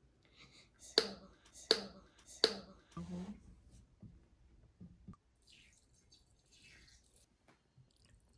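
Sharp clicks and small knocks from a bottle and mixing bowl being handled as slime activator is poured. Three crisp clicks come about three quarters of a second apart, followed by a few fainter clicks and soft rustling.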